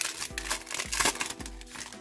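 Foil wrapper of a Panini Select football card pack crinkling as it is torn open, with irregular crackling strokes, over background music.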